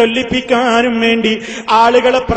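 A man preaching in Malayalam, his voice drawn out in long syllables held at a steady pitch, phrase after phrase with a brief pause near the end.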